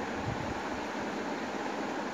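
Steady, even background hiss of room noise, with no distinct strokes or knocks standing out.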